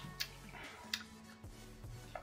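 Faint background music with sustained low notes, and a few soft clicks, about three in two seconds.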